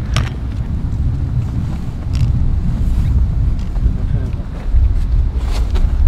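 Wind buffeting the microphone in a steady low rumble, with a few short scuffs and clicks from climbers' footsteps and trekking poles on snowy rock.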